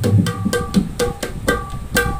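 Two-headed barrel drum (dholak-type) played by hand in a steady teka rhythm: quick strokes mixing deep bass hits with sharper, ringing higher slaps.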